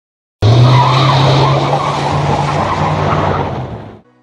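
Car tyres squealing as a sound effect, starting suddenly about half a second in and fading out near the end, with a steady low engine-like hum beneath the screech.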